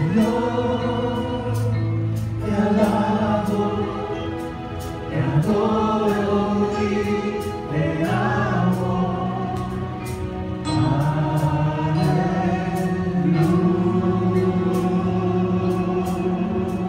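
Live gospel worship music: women singing a slow melody with held and sliding notes into microphones, over a band with sustained low notes and a regular light percussion beat.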